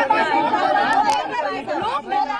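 Several voices talking over one another, with two sharp clicks about a second in.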